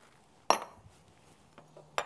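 A metal spoon clinks against a glass about half a second in, with a short bright ring, and clinks once more at the very end.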